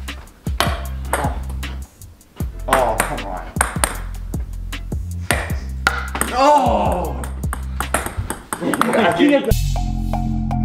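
Ping pong balls bouncing on a hardwood floor and a wooden board: a long, irregular run of light clicks and ticks. Voices shout between the bounces. Background music with a steady low line plays throughout and takes over near the end.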